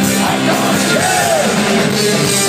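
Live rock band playing loudly, with drums, upright bass and electric guitar, and a note that bends up and back down around the middle.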